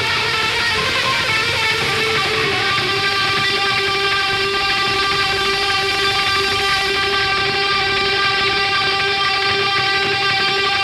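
Distorted electric guitar holding one long sustained note that rings steadily at a single pitch.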